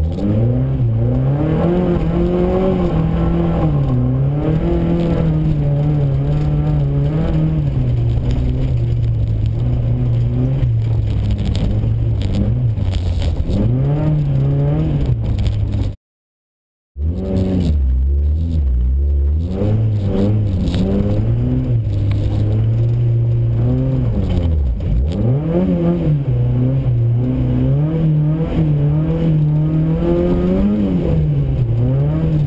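Group 2 VW Golf GTI rally car engine heard from inside the cabin, its revs rising and falling over and over through gear changes and corners. It cuts to a second of silence about halfway through, then the engine picks up again, revving on through the next run.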